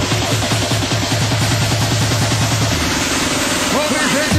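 Fast electronic dance music from a DJ set playing loud over a club sound system. The steady bass drops out about three-quarters through, and sliding, pitch-bending synth sounds begin just before the end.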